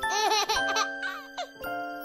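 A baby giggling over a light, tinkling music jingle; the giggles fade after about a second while struck, bell-like notes ring on.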